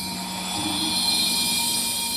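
Soundtrack of a projection-mapping show: a steady, bright shimmering whoosh with held high tones over a low sustained note.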